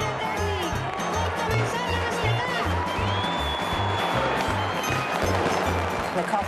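Background music with a steady, pulsing bass beat, and a long held high note in the middle.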